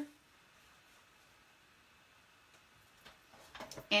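Mostly quiet room tone, then a few faint clicks and rustles near the end as cardstock is handled on a paper trimmer during scoring.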